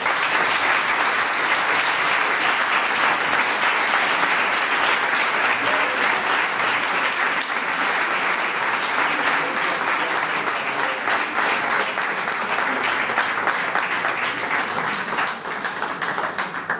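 A roomful of people applauding, a dense, steady clatter of many hands clapping.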